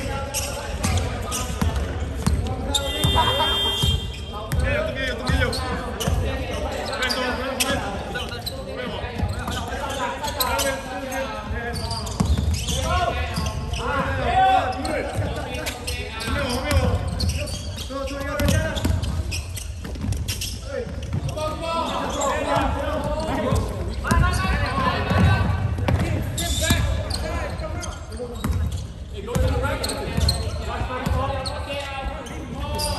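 Basketball game in play: the ball bouncing on the court floor amid players' footsteps, with players' voices calling out, echoing in a large sports hall.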